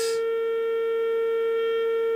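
Steady test tone at a single pitch with overtones, reproduced by the loudspeaker of a Vegaty S.T.4 valve signal tracer as its probe picks up the signal at the grid of a tube stage.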